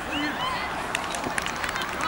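Outdoor football-pitch ambience: a few short shouts from players and spectators, then a scatter of short sharp clicks over steady background noise.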